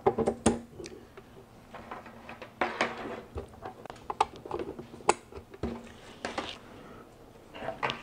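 Ethernet patch cables being handled and their RJ45 plugs pushed into the ports of a PoE switch and a network video recorder: an irregular run of sharp plastic clicks and knocks with short bursts of cable rustling between them.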